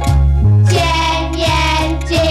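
A children's song: a child's voice singing a line of sung text in held, gliding notes over a backing with a steady, bouncing bass line.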